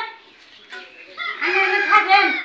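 A rooster crowing: one loud, high call of about a second in a few drawn-out segments, starting partway through after a quiet stretch.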